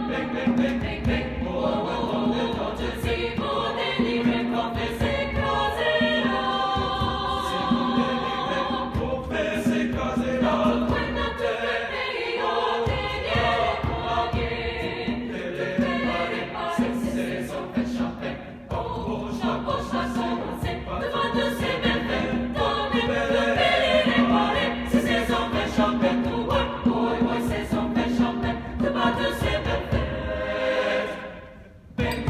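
A mixed high school choir singing in harmony. The singing is loud and continuous, with a brief dip about two-thirds of the way through.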